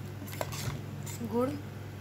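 A metal ladle clinks once against a metal pot while stirring thick mango pickle in jaggery syrup, over a steady low hum.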